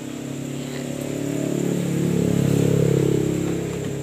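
A motor vehicle passing on the road, its engine growing louder to a peak about two and a half seconds in, then fading away.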